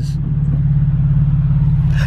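Car engine and road noise heard from inside the cabin while driving: a steady low drone with a faint hiss above it.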